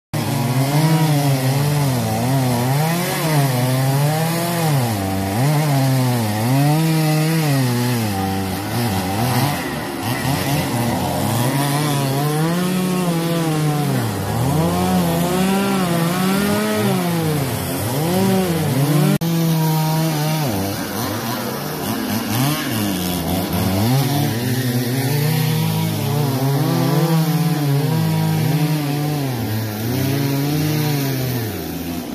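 Chainsaw cutting up a storm-felled tree, its engine pitch rising under throttle and sagging again every second or two as the chain bites into the wood.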